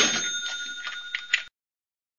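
An edited-in bell-like ding sound effect: a short hit followed by a ringing tone of a few pitches that fades over about a second and a half, then cuts to dead silence.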